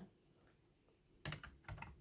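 Hard plastic PSA graded-card cases being handled: a short run of light clicks and clacks about a second and a quarter in, after near silence.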